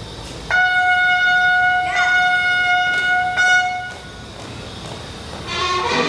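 A brass instrument, typical of the bugle call played for the flag at a Mexican flag ceremony, holds one long loud note for about three and a half seconds, wavering briefly partway through. Near the end, music with several instruments starts up.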